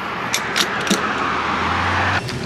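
Fuel pump nozzle dispensing gasoline into a car's filler neck: a steady rushing hiss of fuel flow that builds over the two seconds, with a few light clicks in the first second.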